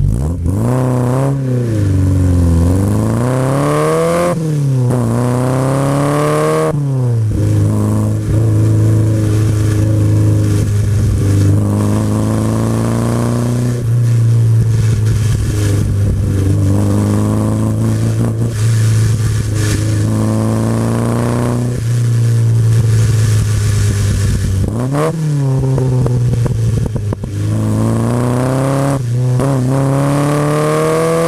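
1959 Triumph TR3A's four-cylinder engine accelerating hard from the start line, its pitch climbing and dropping back with three quick upshifts in the first seven seconds. It then holds high revs, eases off briefly about 25 seconds in, and accelerates again.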